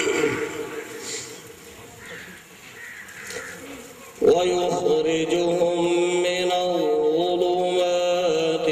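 A man reciting the Quran (tilawat) in a melodic chant into a hand-held microphone. A held note fades just after the start and there is a pause of about four seconds. About four seconds in he comes back in loudly with one long, drawn-out phrase that steps down in pitch partway through.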